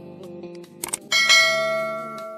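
Subscribe-button sound effect: a quick click, then a bright bell ding about a second in that rings on and slowly fades, over soft guitar background music.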